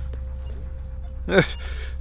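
A man's short, hesitant "äh" about a second and a half in, over a steady low rumble.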